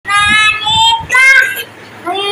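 A toddler's high-pitched voice making three drawn-out, sing-song notes in quick succession.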